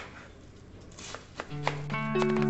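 Kitchen knife slicing through a head of cabbage on a plastic cutting board: about four cuts, each ending in a sharp tap on the board, three of them close together in the second half.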